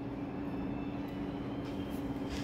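Steady background hum holding one unchanging tone, over a faint even hiss.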